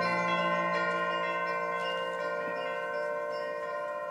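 Concert band playing a quiet held chord with bell-like chimes ringing over it, slowly fading away.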